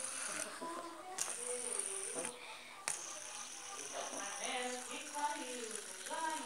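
A hand-held fidget spinner spinning between the fingers, its bearing giving a faint mechanical rattling whir, with two sharp clicks about one and three seconds in.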